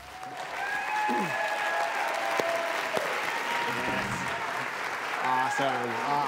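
Audience applauding, with a few cheers about a second in.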